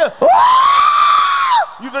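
A short yelp, then a long high-pitched scream from one voice that swells slightly and falls away at the end.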